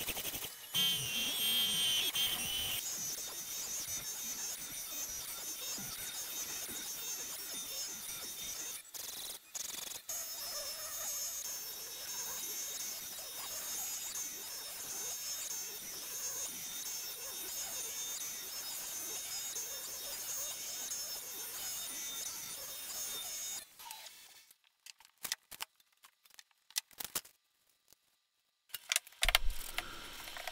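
CNC router spindle running at high speed and milling Baltic birch plywood, a steady high whine with cutting noise. It stops about 24 seconds in, and a few brief clicks follow in near silence.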